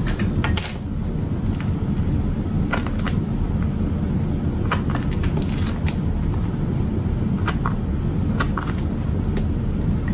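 A steady low rumble of background noise throughout, with scattered light clicks and taps as vinyl bag panels and snap hardware are handled on a sewing table.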